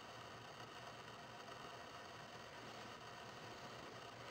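Near silence: faint, steady room hiss.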